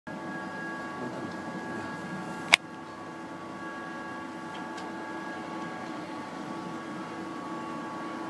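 A steady mechanical hum made of several held tones, broken once by a single sharp click about two and a half seconds in.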